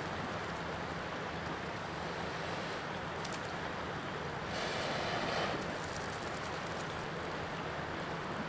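A person blowing into a smouldering tinder bundle held in the hands, coaxing the ember into flame: a breathy rushing sound, with one longer, louder breath about halfway through.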